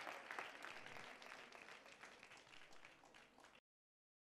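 Audience applause, many hands clapping, fading steadily away and then cutting off suddenly to dead silence near the end.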